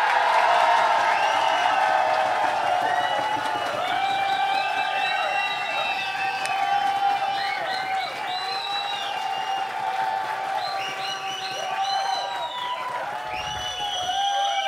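Audience applauding and cheering, with many overlapping whoops and calls rising and falling in pitch; the applause is strongest at first and slowly dies down.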